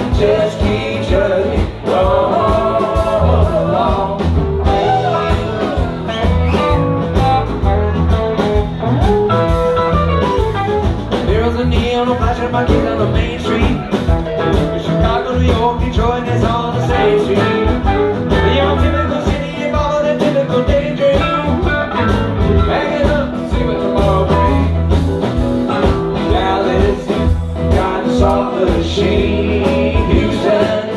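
Live rock band playing: electric guitars, electric bass, keyboards and drums, heard from the audience.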